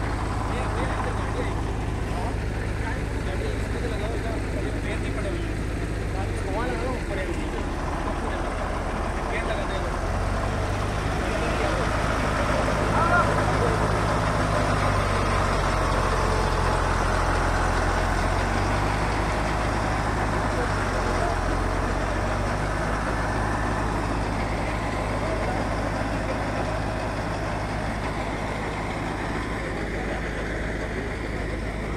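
Heavy diesel engines of a crane and a lorry running steadily under the chatter of a crowd, a little louder for several seconds in the middle. A short high-pitched sound stands out about 13 seconds in.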